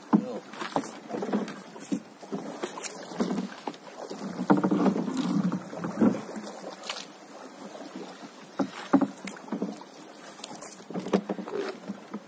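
A paddle knocking and splashing beside a small boat while a nylon floating gill net is paid out over the side, making irregular knocks and bursts of splashing and rustling.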